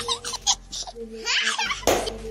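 People laughing and giggling in short bursts, with a short sharp knock near the end.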